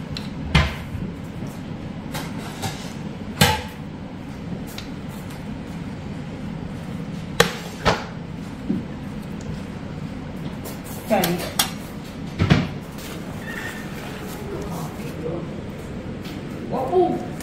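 A serving spoon clinking against a pan and a ceramic plate as curry is dished out: a few sharp, separate clinks several seconds apart over a steady low hum.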